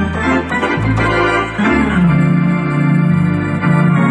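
Hammond Elegante XH-273 electronic organ played in sustained chords over held bass notes, with the bass and chord changing a few times.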